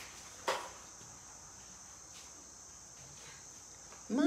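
Steady high-pitched insect chorus of late-summer crickets, with a single sharp knock about half a second in.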